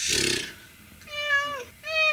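Domestic cat meowing twice: one drawn-out meow about a second in, and another starting near the end.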